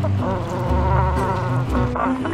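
Gentoo penguin chicks calling, a rapid, wavering, buzzy trill.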